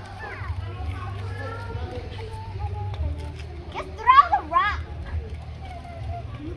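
A child's voice and faint chatter, with two short high-pitched calls about four seconds in, over a steady low rumble.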